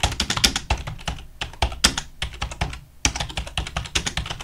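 Typing on a computer keyboard: a fast, irregular run of key clicks, with a brief pause a little past halfway.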